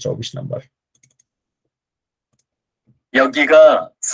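Speech only: a man's voice for under a second, then about two seconds of dead silence, then another, higher-pitched voice.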